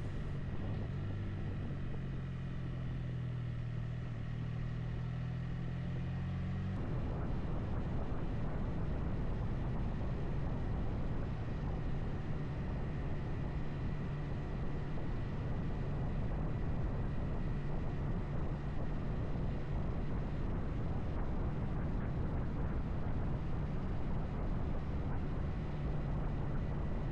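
Motorcycle riding along with its engine running at a steady low drone under wind and road noise. About seven seconds in, the sound changes abruptly to a rougher, broader rush in which the engine note is less distinct.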